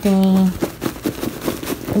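Rustling and a quick run of small clicks and crackles as hands rummage in a handbag and handle a lab coat in a mesh bag.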